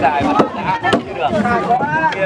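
Two sharp thuds about half a second apart as wooden pestles work a mass of pounded glutinous rice dough in a wooden trough, amid people talking around it.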